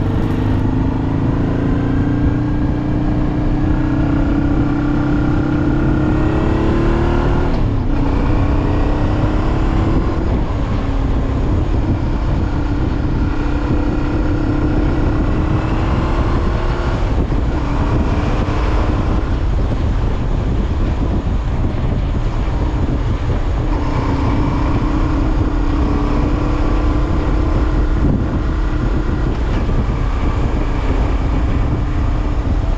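Motorcycle engine running under way, heard from the bike itself over a steady rush of wind and road noise. Its note rises gradually and falls back at several gear changes, about a third of the way in, again soon after, and twice more later.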